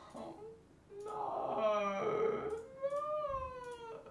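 A young man's quiet wordless groans and whines of dismay, ending in a long, drawn-out falling moan.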